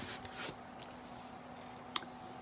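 Faint handling sounds of a large paper-covered book being lifted and turned over in the hands: soft rustling and sliding of the cover early on and a small tap near the end, over a faint steady hum.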